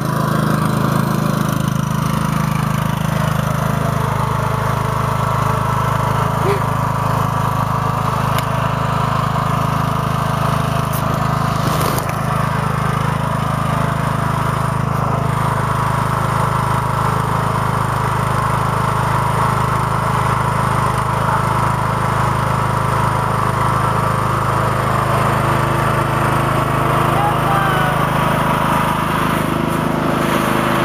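Craftsman riding lawn tractor with a hydrostatic transmission, its engine running steadily as it drives through deep mud.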